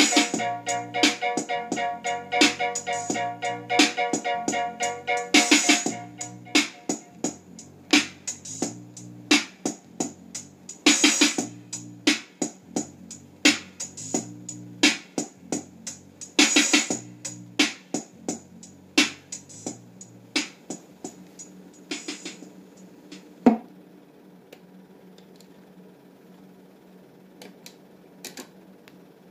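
Reggae dub instrumental playing from a 7-inch 45 rpm single on a console record player. A steady drum beat and bass run with a sustained keyboard chord for the first six seconds, then thin to drums and bass until the track stops about 22 seconds in. One last hit follows, then only faint sound.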